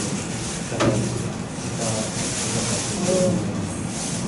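Indistinct murmur of several people's voices in a large room, over a steady hiss.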